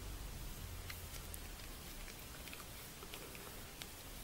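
Faint, scattered small clicks and ticks over a low steady hiss.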